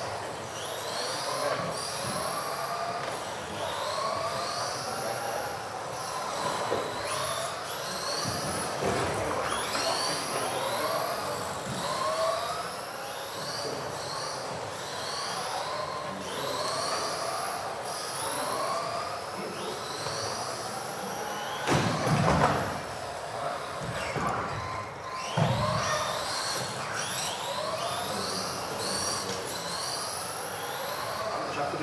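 Several 1/10-scale electric RC race cars whining as they accelerate and brake around the track, their motor pitch sweeping up and down again and again as the cars pass through corners and down the straights. Two louder, deeper moments come about 22 and 25 seconds in.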